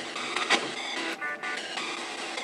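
Spirit box sweeping through radio stations: a steady hiss of static broken by short chopped fragments of sound, with a brief burst of tones a little past halfway.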